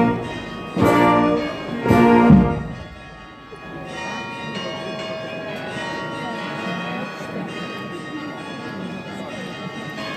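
A brass band ends a piece with two loud held chords in the first couple of seconds. About four seconds in, church bells start ringing over crowd chatter and keep ringing.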